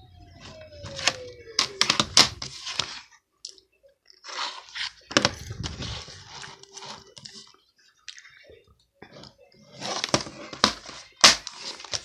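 Plastic DVD case being handled and opened by hand: scattered clicks, knocks and rustling scuffs, with a sharp snap near the end.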